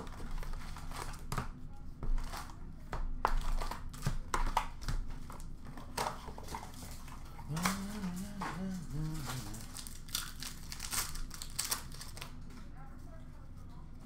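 Foil trading-card pack wrappers crinkling and hockey cards being handled and shuffled by hand: a steady run of short rustles and clicks, busier in the first half. A voice murmurs faintly about halfway through.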